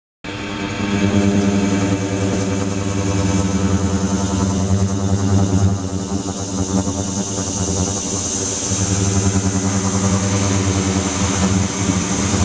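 Ultrasonic tank system running: the 28 kHz and 72 kHz transducers and the degassing/microbubble liquid-circulation pump give a steady electrical-mechanical hum with a strong low buzz and a thin high whine above it.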